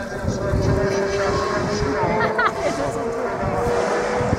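Distant race car engine holding a steady high note that rises slightly in pitch and slowly gets louder as the car approaches, with wind rumbling on the microphone.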